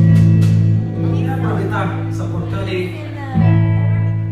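Live band's electric guitars and bass holding sustained chords, two loud chords struck at the start and again about three seconds in.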